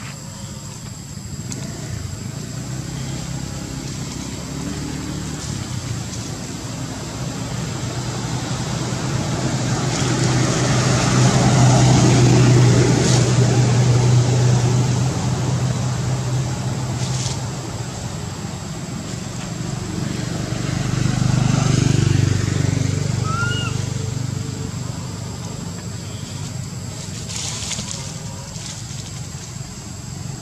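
A motor vehicle engine running, swelling louder twice, once around the middle and again about three quarters of the way in, over a steady high-pitched whine.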